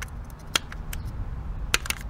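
A screwdriver tip presses down a fuel injector's retaining clip on a fuel rail. A few small sharp clicks, two of them close together near the end.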